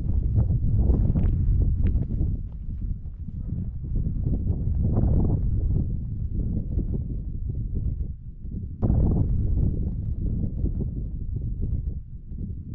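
Wind buffeting an action camera's microphone: a gusty, low rumble that rises and falls, with scattered knocks, jumping up suddenly about nine seconds in.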